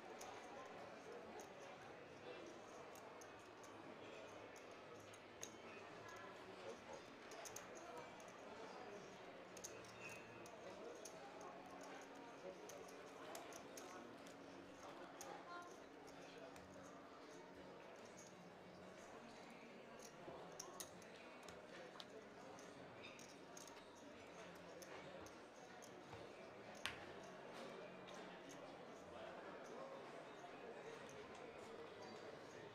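Quiet card-room background: a faint murmur of low voices with scattered light clicks of poker chips being handled and stacked, one sharper click near the end.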